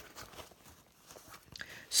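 Faint rustling and handling of a soft leather handbag as hands press and turn it, nearly silent for a moment in the middle.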